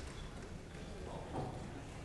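Indistinct murmur of many people talking in a large room, with shuffling and footsteps as they move about.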